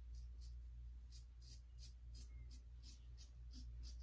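Merkur Futur double-edge safety razor cutting beard hairs: faint, short rasping scrapes, about three or four strokes a second.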